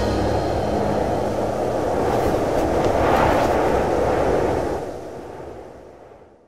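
A steady rushing rumble with no melody or beat, fading out over the last second or so.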